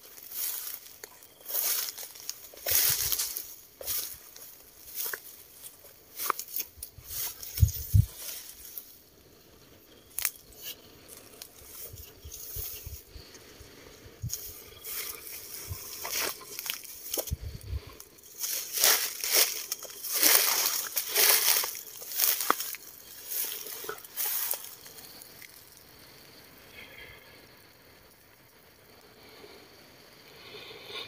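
Footsteps crunching and rustling through dry fallen leaves and long grass in an irregular walking rhythm, with a couple of heavier thuds. It goes quieter near the end.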